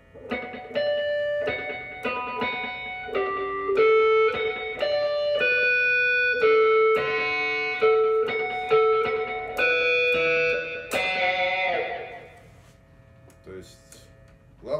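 Electric Stratocaster guitar on its neck pickup, through a Line 6 Helix, playing a melody in natural harmonics at the 12th, 9th and 5th frets. Single ringing notes come about two a second and overlap one another. Near the end a louder, fuller stroke rings out and fades.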